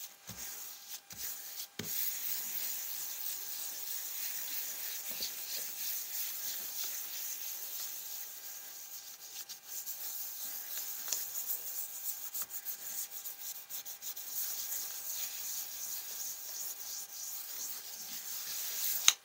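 Palms rubbing over the back of a sheet of paper on a gel printing plate: a steady, dry hiss of skin sliding on paper as the print is burnished to lift the paint through the stencils.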